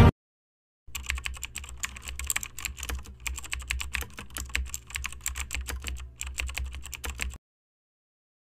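Computer-keyboard typing sound effect: a rapid, uneven run of key clicks starting about a second in and stopping suddenly near the end, over a steady low hum.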